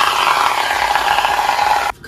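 Aerosol hair mousse foaming out of the can into a hand: a loud, steady hiss whose pitch falls, cutting off suddenly near the end.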